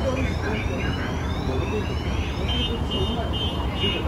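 Electric metro train pulling away, its traction motors giving a set of rising whines over a steady low rumble. From about halfway, a high pulsing beep repeats on and off.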